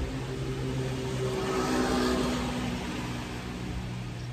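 A motor vehicle passing on the road: a steady low engine hum that grows louder to a peak about two seconds in, then fades.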